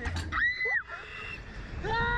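Girls screaming as a slingshot ride capsule is launched upward: a short noisy burst at the start, then a short high scream about half a second in that falls away, and a long, lower, steady scream starting near the end.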